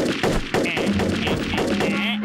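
Cartoon sound effect: a fast, continuous rattle of clicks and hits, like a burst of rapid fire, over background music. A steady low tone joins in over the second half.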